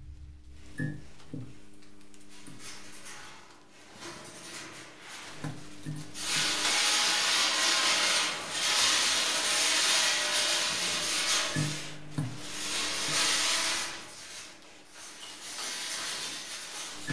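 Dark film soundtrack: a low held drone with soft low thumps that come in pairs, and a loud hissing, rasping noise from about six seconds in that dies away near fourteen seconds.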